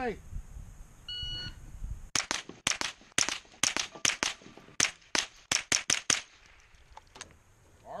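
A short electronic start beep, then rapid gunfire of about twenty shots in some four seconds, as in a timed bowling pin shooting run, with a few fainter shots trailing off near the end.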